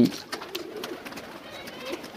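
Domestic pigeons cooing softly, with a few faint clicks.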